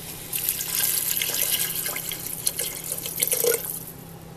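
Water being poured into a pressure cooker over lentils and chopped bottle gourd: a steady pouring rush that starts about a third of a second in and tapers off near the end.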